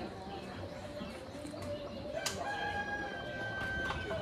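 A rooster crowing: one long, steady call that starts sharply about halfway through and is held to the end.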